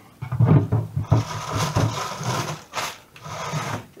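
Fridge crisper drawer being handled: a few knocks, then a long plastic scraping and rubbing as the drawer slides, and one more knock near the end.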